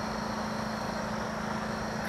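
A steady low hum with a faint hiss over it, unchanging throughout.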